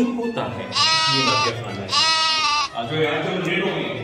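Two drawn-out, goat-like bleating cries, the first about a second in and the second about two seconds in, each lasting under a second, with talk around them.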